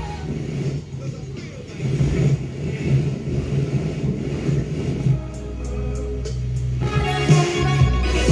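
Telefunken Opus 2430 valve radio being tuned from one station to another: the music breaks off with a click, about five seconds of noise, crackle and station fragments follow, and another station's music comes in near the end.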